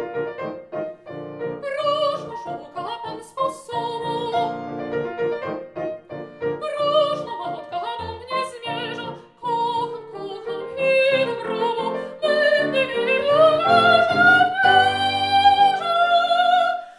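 A soprano singing an operatic aria with vibrato, accompanied on a grand piano. In the second half her voice climbs and holds a long, loud high note.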